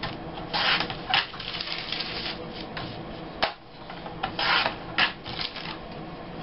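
Paper being handled on a tabletop: sheets rustling and sliding, with a few short, crisp crackles.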